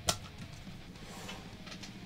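A single sharp click near the start as the boxed travel mug's cardboard and plastic packaging is handled, then faint handling noises, over quiet background music.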